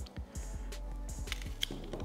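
Soft background music with steady held tones, over a few light clicks and taps from calla lily stems being handled on a wooden table.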